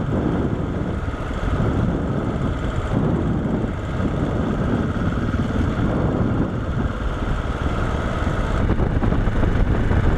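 KTM 690 single-cylinder motorcycle engine running steadily as the bike rides along a gravel road, with tyre and road noise mixed in.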